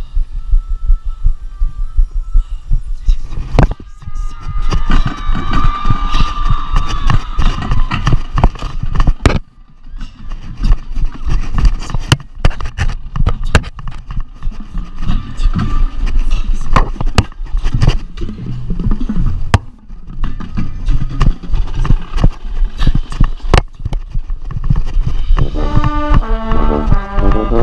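A camera mounted on a tuba, jostled as the player moves across the field: continuous low rumbling and thumping with sharp knocks. The marching band's music plays faintly beneath, and a brass chord sounds right at the end.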